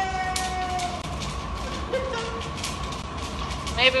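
Popcorn popping and crackling in a hot blown-glass bowl, scorching a little: many quick, irregular clicks over the low, steady roar of the glassblowing furnace.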